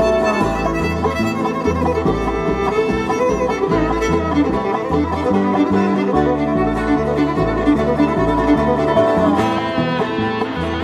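Bluegrass band playing an instrumental break, with fiddle lead over guitar and banjo at a steady beat.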